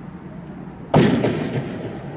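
A single loud firework bang about a second in, its echo trailing off over most of a second.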